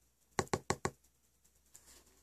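Four quick, sharp knocks in an even run, struck on a tabletop and bowl as part of a hand-played percussion beat, followed by a faint tap near the end.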